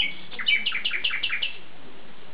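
A songbird singing: a short high note, then a quick run of about eight repeated, downward-slurred notes lasting about a second.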